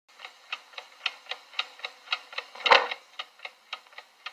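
Cartoon sound effect of a clock ticking steadily, about four ticks a second, with one louder, longer clunk about two-thirds of the way through.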